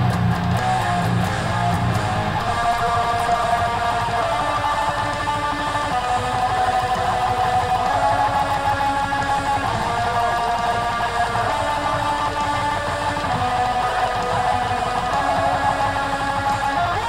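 Red Ibanez electric guitar playing a hardcore riff, picked notes with some held notes, heavier low notes in the first couple of seconds.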